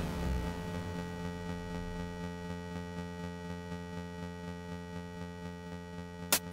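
Electronic music: a sustained synthesizer chord held steady and slowly fading.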